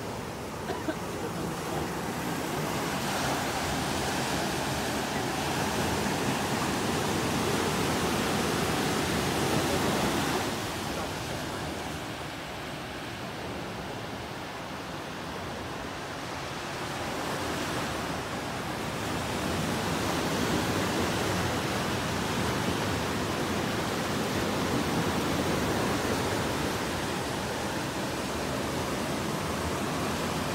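Ocean surf breaking and washing up a sandy beach: a steady rush of noise that swells and ebbs in long waves, with a quieter stretch about halfway through.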